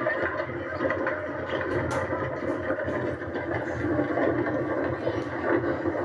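Steady rushing rumble of a carrilana, a wooden downhill gravity kart, running fast on an asphalt road, heard through a television speaker.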